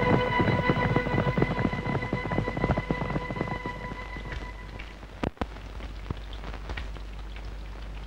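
Bacon rashers sizzling and crackling in a frying pan, with an orchestral music cue fading out over the first half.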